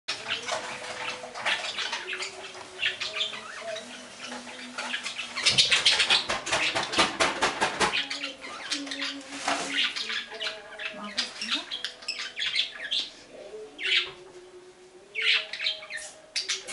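Pet budgerigars chattering: busy high chirps and warbles with runs of rapid clicking, loudest and densest a third of the way in, thinning out briefly near the end.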